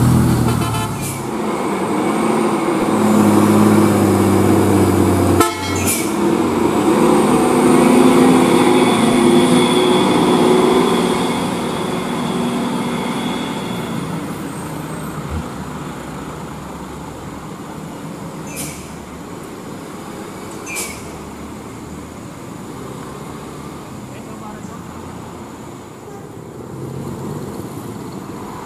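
Heavy trucks and cars passing on a winding mountain road, their diesel engines running steadily. The traffic is loudest for the first dozen seconds, then fades to a quieter steady road noise, with two brief clicks in the middle of that stretch.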